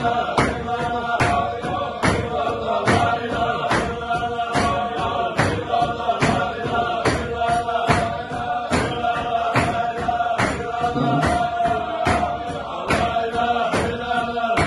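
A group of men chanting a Sufi zikr together, a sung line held over a quick, steady beat of sharp strokes, roughly two to three a second.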